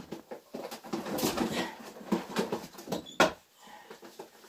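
Handling noises at a wire pigeon cage as a pigeon is taken out: scratchy rustling and light knocks on the wire, with one sharp click about three seconds in.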